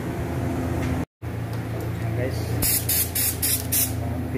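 Paint spray gun firing a quick run of about five short bursts of spray, starting about halfway through, over a steady low hum. The sound drops out briefly about a second in.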